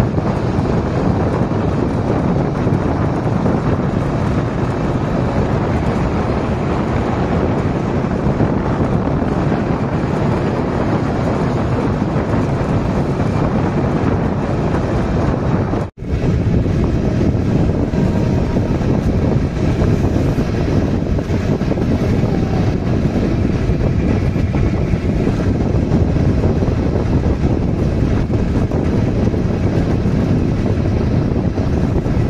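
Steady rush of wind on the microphone mixed with vehicle and road noise, riding at speed in an open vehicle. The sound cuts out for an instant about halfway through.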